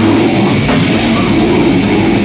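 Death metal band playing live and loud, with drums and guitars in a dense, unbroken wall of sound and rapid beats in the low end.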